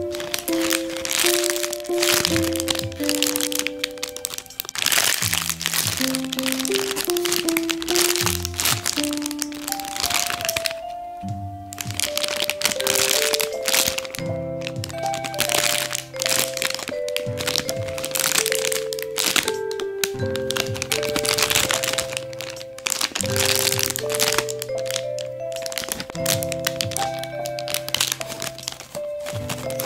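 Clear plastic bags around squishy toys crinkling and crackling as they are handled and squeezed, over background music: a simple melody of stepped notes above a bass line.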